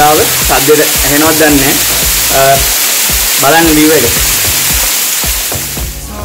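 Loud, steady rush of the Meeyan Ella waterfall pouring close by onto rock, a hiss that stops suddenly at the end. A man's voice comes over it in short stretches.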